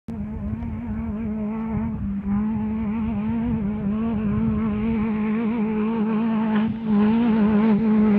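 Engine of an off-road race vehicle held at high, steady revs as it approaches, its note wavering slightly and growing louder, with brief dips in the revs about two seconds in and again near the end.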